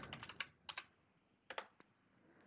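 Faint key clicks of a computer keyboard as a password is typed: a quick run of keystrokes in the first half second, then a few more spaced-out presses.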